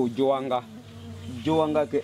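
Bees buzzing around a wild honey nest in a tree, over a steady low hum. The buzz grows loud twice, bending up and down in pitch, as bees fly close.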